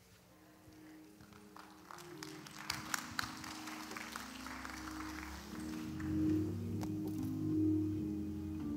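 Grand piano playing slow, held chords that start faintly and grow louder, with a few light clicks about three seconds in.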